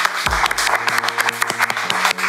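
A small group of people clapping, with background music playing under it.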